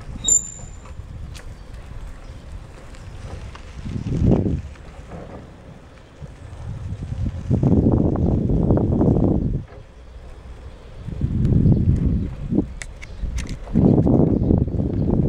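Wind buffeting an open-air microphone in irregular low rumbling gusts that swell and die away several times. A brief high chirp sounds right at the start.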